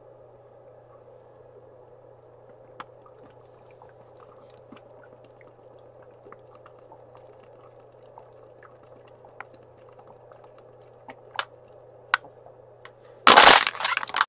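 Plastic water bottle being drunk from: mostly quiet, with a steady low hum and faint small clicks while the water is swallowed. Near the end, a loud crinkling crackle of the thin plastic bottle as it is lowered.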